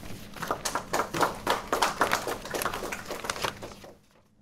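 Applause in a lecture hall: many hands clapping irregularly, thinning out and stopping near the end.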